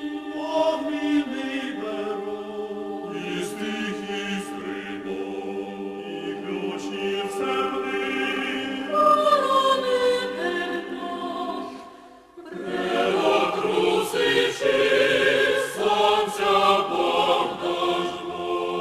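Mixed chamber choir singing sacred a cappella choral music in sustained chords. The voices die away briefly about twelve seconds in, then come back fuller and louder.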